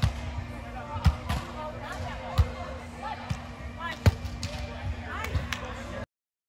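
Beach volleyball being struck by players' hands and forearms during a rally: a series of sharp smacks, the loudest about one, two and a half and four seconds in, echoing in a large indoor hall. Other players' voices carry in the background.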